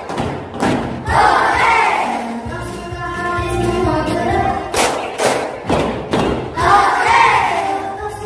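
A group of children with a woman's voice singing a short song together, with loud thumps in time: a couple near the start and a quick run about five seconds in.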